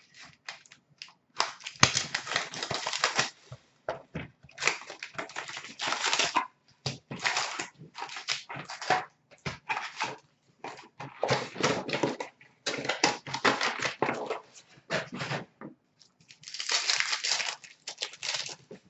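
Upper Deck hockey card box and its card packs being torn open by hand. Several long ripping, crinkling tears of about two seconds each come among many short rustles and crackles of wrapper and cardboard.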